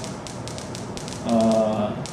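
Light, irregular tapping clicks for the first second or so, then a man's voice holding one long, steady, drawn-out vowel, like a held 'uh', near the end.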